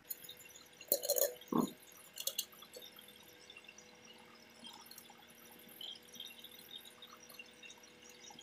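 Light metallic clinks of a piston ring and feeler gauge against a steel cylinder liner as the ring is set low in the bore to measure its end gap. The clinks come in a short cluster about a second in and once more near two and a half seconds, followed by faint handling sounds.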